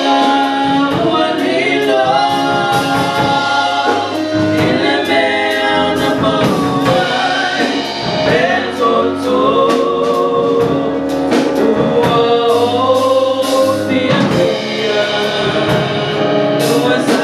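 Live gospel worship song: several singers on microphones sing held, gliding lines over keyboard and a drum kit keeping a steady beat.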